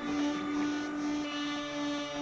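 Desktop PCB milling machine's spindle running with a steady whine as its end mill cuts into a copper-clad FR1 circuit board.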